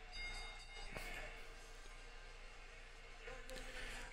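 Quiet room tone with a steady low hum and faint, indistinct voice or music in the background, and a single click about a second in.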